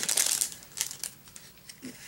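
Crinkling of a clear cellophane-type plastic treat bag handled and opened by hand, loudest in the first half second, then a few faint crackles.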